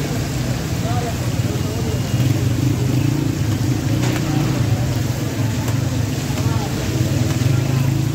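Chapli kababs frying in a large shallow pan of deep, bubbling oil, sizzling steadily over a constant low rumble. Voices are faintly heard in the background.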